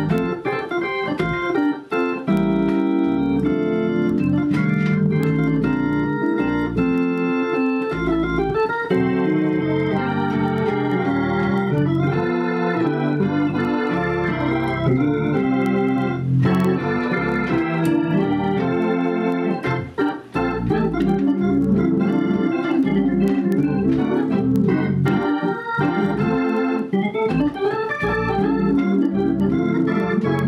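Hammond B3 organ playing a full song: sustained chords with melodic runs, moving from the lower manual to both manuals near the end. There are short breaks in the sound about two seconds in and again around twenty seconds.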